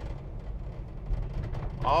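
Steady low drone of a 1968 Ford Bronco's 302 small-block V8 and road noise, heard from inside the cabin while driving at low speed. A man's voice starts again near the end.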